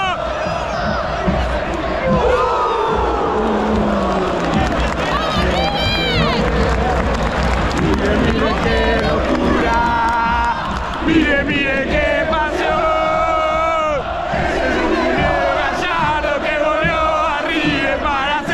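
Stadium crowd of football fans cheering and shouting in celebration of a goal, with men yelling close by.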